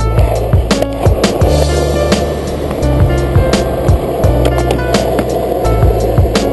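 Skateboard wheels rolling on a concrete court as the skater pushes off and rides, under background music with a steady beat.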